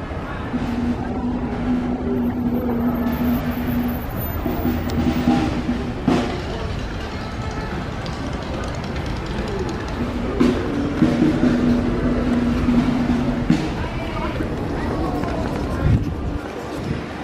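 A low, steady horn tone held for about three seconds, sounding twice, over street noise.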